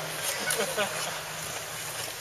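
Ice skate blades gliding over rink ice with a steady scraping hiss, over a low steady hum.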